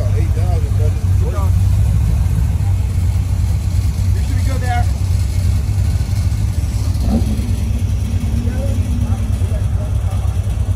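A red C2 Corvette Sting Ray restomod's V8 runs with a steady, deep, low rumble as the car creeps past at walking pace. Bits of voices sound over it.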